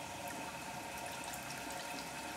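Faint, steady watery hiss from a running 6 kW continuous stripping still as sugar wash is fed in through its supply tube.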